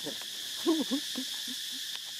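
Young macaque giving a short burst of squeaky calls that rise and fall in pitch, a little under a second in, with a few faint clicks around them.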